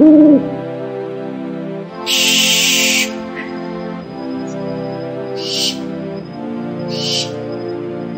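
Film soundtrack of sustained background music chords. A short hooting call comes right at the start. A loud hiss about two seconds in lasts about a second, and two shorter hisses follow later.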